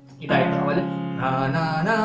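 Electronic keyboard playing the song's chorus melody in the right hand over held chords in the left, starting after a brief pause.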